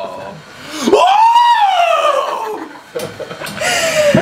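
A high-pitched human cry of surprise, one long drawn-out call of about two seconds that rises in pitch and then falls away.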